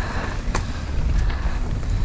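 Mountain bike descending a dirt trail: wind buffeting the camera's microphone over the rumble of tyres on dirt, with scattered clatter and knocks from the bike. A sharp knock about half a second in.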